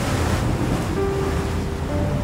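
Ocean waves and wind, a steady rushing noise of open sea.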